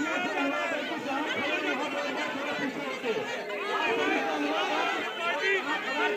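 A crowd of protesters talking over one another: many overlapping voices at once, with no single voice standing out.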